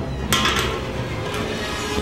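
Aluminium Mountain Dew soda can rocking and tipping on its rim on a concrete floor: a sharp metallic clink and scrape about a third of a second in, then a lighter one a little past halfway.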